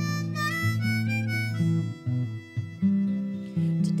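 Harmonica playing a melodic fill of held notes that step up and down in pitch, over acoustic guitar accompaniment. The voice comes back in singing at the very end.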